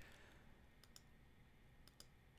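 Near silence with three faint clicks of a computer mouse, two close together about a second in and one near the end.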